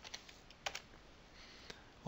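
Computer keyboard typing, faint: a quick run of keystrokes at the start, then a few single key presses spaced apart.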